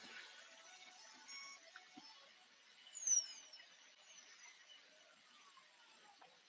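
Quiet outdoor ambience with faint, high bird chirps; one short, high falling chirp stands out about three seconds in.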